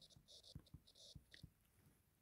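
Near silence: faint room tone with a few soft ticks and a faint hiss.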